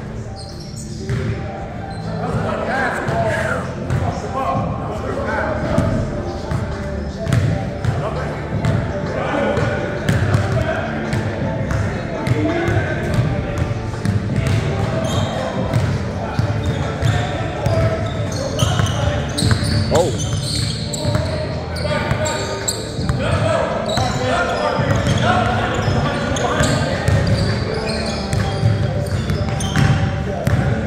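Pickup basketball game on a hardwood gym court: indistinct players' voices calling out throughout, over repeated short thuds of a basketball bouncing.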